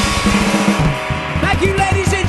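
Live rock band playing loud: distorted electric guitar and drum kit in a dense wall of sound. About a second in the full sound thins out, leaving separate drum hits and a sliding, bending melodic line.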